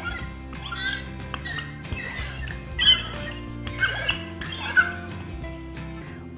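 Wooden rolling pin rolling out pizza dough on a floured countertop, making a short rubbing noise on each of about five strokes.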